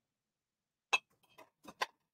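Glass storage jars clinking as they are handled on a metal wire shelf: a few short, sharp clicks in the second half.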